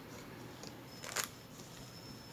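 Quiet room tone broken about a second in by one short, sharp rustle-like click, typical of a card or the phone being handled.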